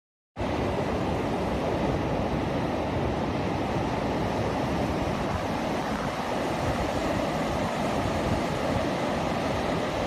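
Steady rush of ocean surf on a sandy beach, with wind buffeting the microphone.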